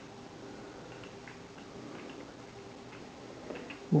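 Faint, sparse small clicks of an allen key turning the rail-clamp bolt of a polymer tactical foregrip as it is unscrewed, with a few quick ticks near the end, over a low steady room hum.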